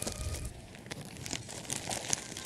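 Quiet, irregular crinkling and clicking handling noise.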